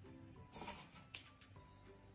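Quiet background music with steady notes. About half a second in, a short rustle of hands pressing a ball of homemade baking-soda and shaving-cream snow, followed just after a second by a single sharp click.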